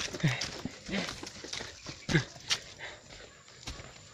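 Footsteps going down concrete steps, irregular knocks with a walking stick tapping the ground, and a few short low vocal sounds from the walkers that fall in pitch.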